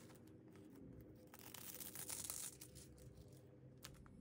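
Faint crinkling and rustling of a thin sheet of gold embossing foil as it is handled and pressed onto dried glue, with a few soft ticks, a little louder about halfway through.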